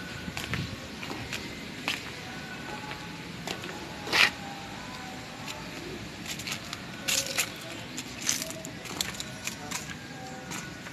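Scattered clicks and knocks from a handheld camera being moved while someone walks around the car. The loudest comes about four seconds in, with a quick cluster around seven seconds, over faint background sound with short tones.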